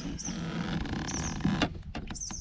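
A small fish lifted by hand from the water beside a kayak, with a sudden loud splash about one and a half seconds in. Steady low wind rumble on the microphone underneath, and a few short high bird chirps.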